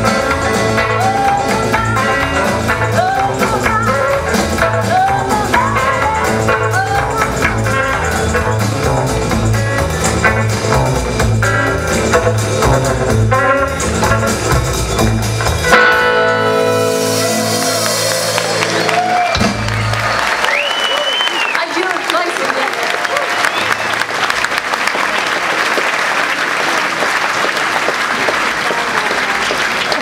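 Live rockabilly band of electric guitars, upright bass and drums playing, ending on a held final chord about 16 seconds in. Audience applause and cheering follow, with a single whistle.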